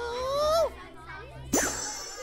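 A child's voice holding out the last word of a magic incantation, then about a second and a half in a sudden bright ding-like sound effect with a high ringing shimmer that fades: a magic-reveal chime.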